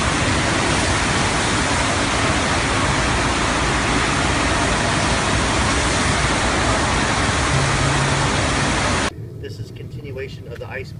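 Loud, steady rush of water jetting across a sheet-wave surf simulator, stopping suddenly about a second before the end.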